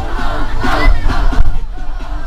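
A group of children shouting and singing together, with music playing underneath, inside a moving school bus.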